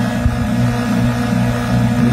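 Old Soviet electric motor, rebuilt with four magnets and a four-brush armature, running at a steady speed with a steady low hum.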